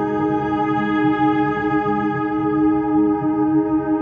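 Background music: a slow ambient piece of held, echoing guitar tones over a soft low pulse.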